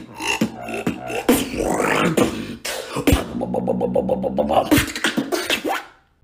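Solo human beatboxing: fast mouth-made drum hits and clicks, a rising hissing sweep about a second in, then a pitched, fast-pulsing bass tone under the beat in the second half, cutting off at the end.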